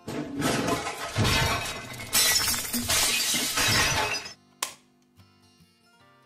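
A person tripping and falling over clutter in the dark: a long crash of things falling and breaking, with several heavy impacts, lasting about four seconds. It is followed about half a second later by a single sharp click.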